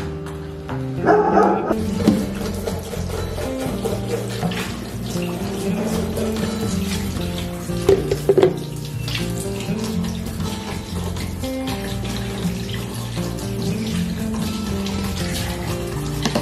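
Background music, with a kitchen tap running into a stainless steel sink as plastic containers are rinsed under it. A couple of short, louder sounds stand out about a second in and about eight seconds in.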